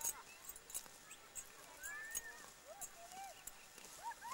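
Dry mustard stems being pulled and gathered by hand, making light, scattered crackling clicks, with faint voices calling in the distance.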